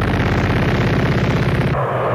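Heavy metal music: a fast, distorted guitar riff picked rapidly on low notes, a loud rattle of quick strokes over a steady low pitch. Near the end the high end drops away.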